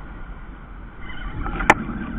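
A steady low rumble of wind and water around a kayak on choppy open water. One sharp click comes near the end.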